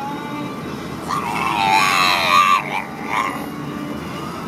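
A pug gives a long, wavering whine starting about a second in, then a short second one, over the steady road noise of a moving car.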